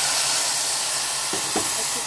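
Water poured into a hot pan of mango pieces frying in mustard oil and spices, setting off a loud, steady hiss and sizzle of steam.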